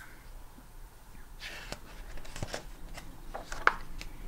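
Pages of a picture book being turned and handled: a dry paper rustle with several light clicks and flicks, loudest near the end.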